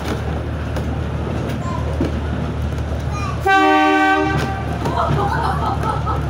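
Heritage train carriage running steadily along the track with a low noise from the wheels and running gear. About three and a half seconds in, the locomotive gives one short toot, about a second long.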